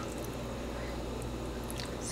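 Water being spooned out of a pot of boiling rice with a large metal spoon: faint liquid sounds over a steady low hum, with a light tick near the end.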